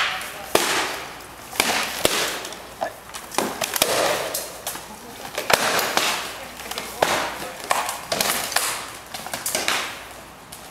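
Rattan weapons striking shields and armour in SCA armoured sparring: an irregular series of sharp cracks and knocks, about a dozen over ten seconds, with scuffling and armour clatter between blows.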